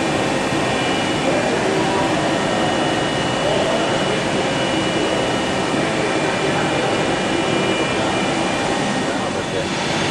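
DMG Gildemeister Twin 65 CNC lathe running: a loud, steady machine noise with several steady high whines over it.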